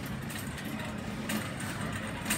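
Shopping cart being pushed along a supermarket aisle: a steady low rumble of the wheels on the hard floor, with a sharp rattle about a second and a half in.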